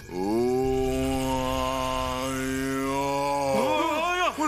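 A man's voice letting out one long, steady drawn-out wail, held for about three and a half seconds, then breaking into a wavering, rising-and-falling cry near the end.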